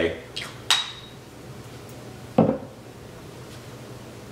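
Glass perfume bottle being handled: two sharp clinks early on, the second ringing briefly, then a single knock as the bottle is set down on the table about two and a half seconds in.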